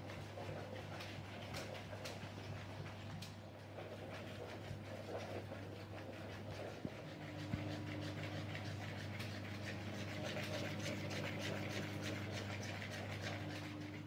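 Spoons stirring and scraping melted white chocolate in plastic mixing bowls, a scatter of light clicks and scrapes over a steady low hum. A second, higher hum joins about halfway through.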